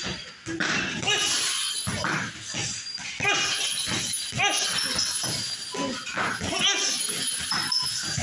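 Gloved punches thudding into a heavy punching bag in quick runs, with music playing and short high-pitched cries over it.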